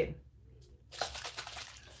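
A spray bottle misting: a faint hiss starting about a second in and flickering until the end.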